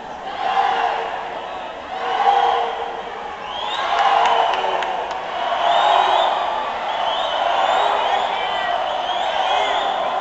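Crowd of swim-meet spectators cheering and shouting for the swimmers, with high whoops and calls, the noise swelling and easing several times.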